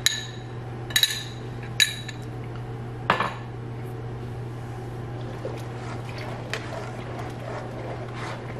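Cornstarch dissolved in milk being poured from a cup into a pot of milk near the boil, with a spoon clinking sharply against the cup three times in the first two seconds and a duller knock about three seconds in. A low steady hum runs underneath.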